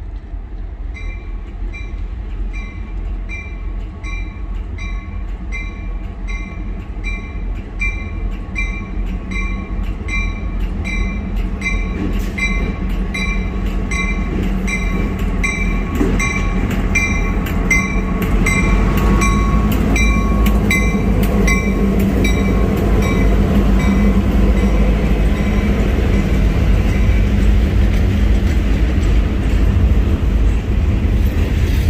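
Norfolk Southern diesel freight locomotives approaching and passing with the locomotive bell ringing steadily, about one and a half strikes a second. The engine rumble grows louder as the locomotives go by, and the bell fades out about twenty seconds in. The freight cars' wheels click over the rail joints as they roll past.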